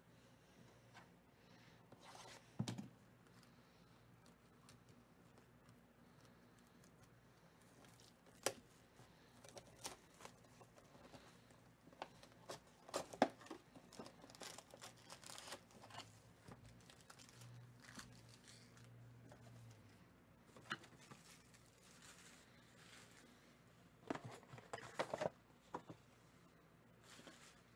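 A cardboard trading-card hobby box being torn open and its foil card packs pulled out and set down: quiet, scattered tearing, rustling and crinkling, with a few sharper clicks and taps, the strongest about halfway through.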